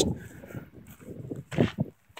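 A few soft footsteps as a person walks outdoors, over faint background noise, with the loudest short steps near the end.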